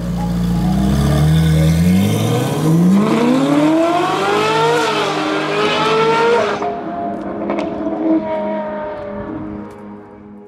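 Ferrari 458 Italia's naturally aspirated V8 accelerating hard, the revs climbing, dropping at an upshift about two seconds in and climbing again, over sustained background music. The engine sound cuts off suddenly about two-thirds of the way through, leaving the music.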